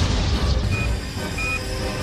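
Action-film sound mix: a deep rumble under dramatic music, with two short high electronic beeps about a second in.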